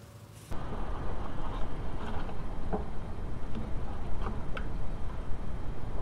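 A steady low rumble with a few faint clicks and taps of hands handling parts in a car's engine bay. It starts abruptly about half a second in.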